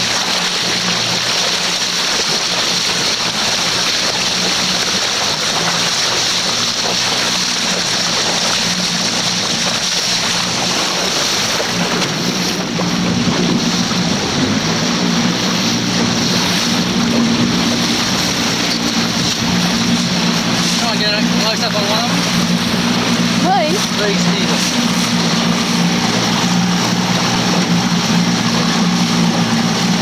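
Small motorboat's engine running steadily under way, over the rush of water and wind. About twelve seconds in the engine note rises and grows louder as it speeds up.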